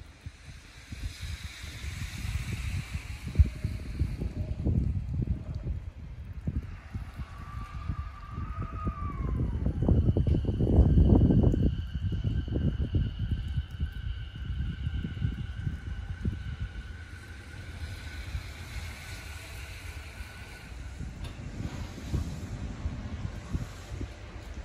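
JR 209 series electric commuter train pulling out, its VVVF inverter motors giving a whine that glides up and back down about eight seconds in, then holds steady tones. Underneath is a low running rumble that is loudest a little past the middle. Wind buffets the microphone.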